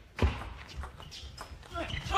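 Table tennis rally: the plastic ball hit by rackets and bouncing on the table. A sharp hit comes about a quarter of a second in, followed by a run of lighter clicks.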